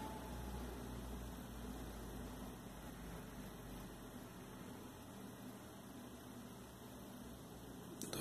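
Faint steady hiss with a low hum, with no distinct sound event: background noise of the recording.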